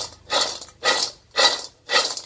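Dried wild seeded-banana pieces tossed in a metal wok over a wood fire while dry-roasting to golden: a rattling swish each time the pan is flipped, about twice a second, four times.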